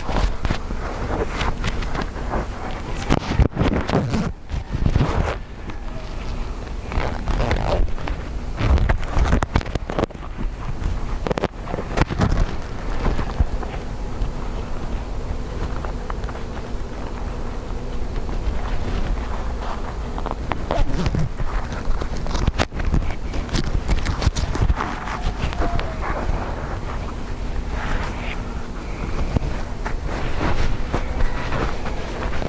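Wind buffeting the microphone, with a few sharp knocks and scrapes scattered through it as a beehive is opened and its parts handled.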